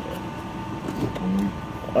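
A woman's voice murmuring briefly and quietly, with a short held low hum about a second in, over a faint steady high-pitched tone.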